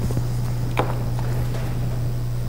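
Steady low electrical hum from the hall's sound system, with a faint knock about a second in and a few softer ticks from handling at the lectern desk.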